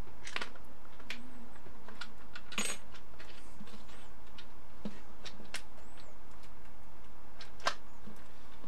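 Scattered light clicks and clacks from the plastic case of a 12 V jump starter being handled and pulled apart, with the sharpest clacks about two and a half seconds in and near the end.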